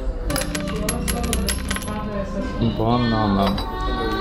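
A quick run of light, metallic-sounding clinks lasting about a second and a half, followed by a short pitched voice sound.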